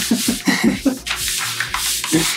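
Hands rubbing and smoothing a wide sheet of masking tape down onto a painted wooden board, a dry, scratchy rubbing.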